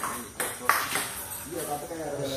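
Table tennis ball clicking off paddles and the table in a rally: a few sharp clicks, the loudest about two-thirds of a second in, with men's voices talking in the background.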